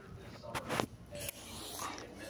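Smartphone being grabbed and moved by hand, its microphone picking up rubbing and handling noise in a few short bursts, the longest a little before a second in.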